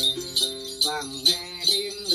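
Traditional Then music: clusters of small jingle bells (chùm xóc nhạc) shaken in a steady beat, about two and a half strokes a second. Under them, a long-necked gourd lute (đàn tính) plucks a melody and a voice sings.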